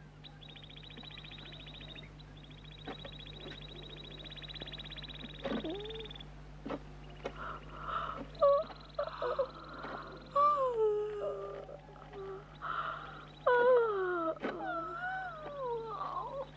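A series of exaggerated, drawn-out vocal yawns from the cat and frog puppet characters, each one sliding down in pitch. They start about five seconds in and grow louder toward the end.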